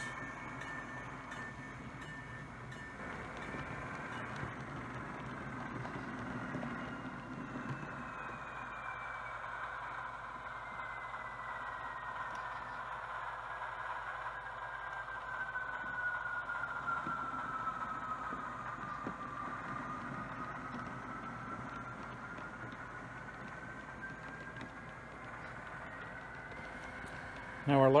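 HO scale model train running along the track: a steady low rolling hum with a thin whine that slowly falls in pitch through the middle and rises again near the end.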